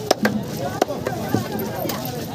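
Large knife chopping through a trevally on a wooden chopping block: several sharp strikes through the cut, the first the loudest.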